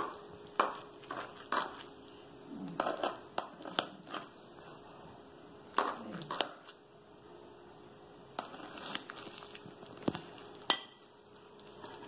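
Metal slotted serving spoon cutting into a baked rice casserole, scraping and clicking against the glass baking dish in scattered short strokes.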